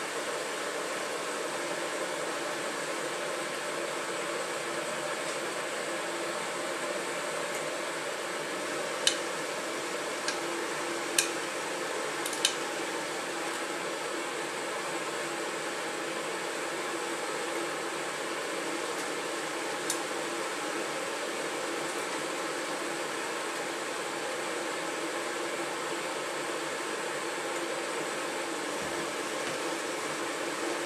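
Samsung Ecobubble WF1804WPU front-loading washing machine running mid-cycle, a steady whirring hiss with a low hum. A handful of sharp clicks come about nine to thirteen seconds in, and one more around twenty seconds.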